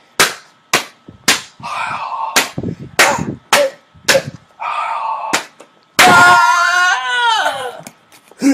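A quick series of sharp smacks or hits, about two a second, mixed with short grunt-like bursts, then a loud drawn-out cry that falls in pitch near the end, as in a fight's knockout.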